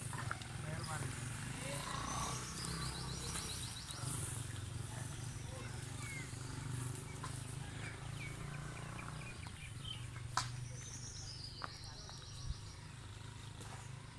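Outdoor ambience: a steady low hum with faint, indistinct voices, and two short high trills several seconds apart. A single sharp click sounds a little past the middle.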